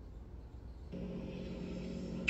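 Faint background noise, then about a second in a steady low hum starts: the lead-in of a WhatsApp voice note beginning to play through a phone's speaker.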